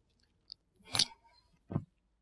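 A person climbing onto a bed and sitting down: a faint click, then a short crackly rustle of the bedding about a second in, and a shorter, lower thump near the end as she settles on the mattress.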